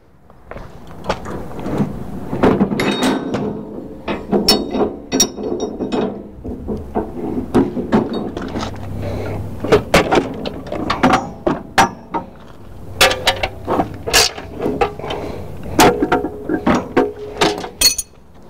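Metal clanks, clicks and knocks from the steel parts of a three-point hitch being handled by hand as a finish mower is unhitched from a skid steer's three-point adapter. The knocks come irregularly throughout, some of them sharp.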